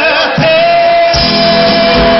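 Live band music with singing, recorded from within the crowd: one long note is held from about half a second in, and bass and drums come in just after a second in.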